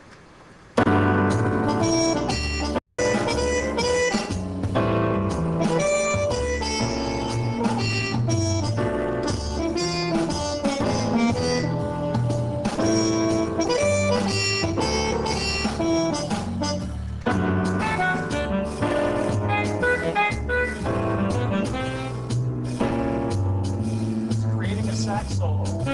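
Korg M3 workstation in combi mode playing a full multi-part groove generated by its KARMA modules, with a saxophone run improvised over the backing. It starts abruptly about a second in and cuts out completely for a split second about three seconds in.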